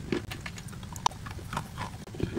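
Dry chalk being handled in a glass bowl and chewed: a run of small irregular crunchy clicks, with one sharper click about a second in.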